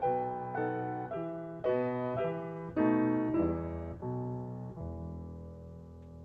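Solo piano playing slow ballet-class accompaniment, chords struck about every half second to second, slowing toward a final long chord that is held and fades near the end.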